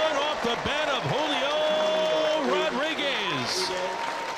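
Spectators yelling and cheering for a home run: many short voice calls overlapping, one drawn out for about a second near the middle.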